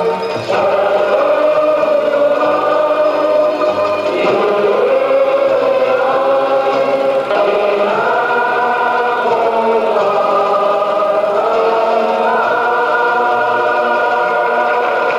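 Background choral music: voices holding long sustained chords, the harmony moving to a new chord every few seconds.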